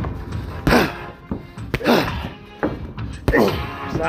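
Boxing-glove punches landing during sparring: a string of sharp thuds at irregular intervals, over background music.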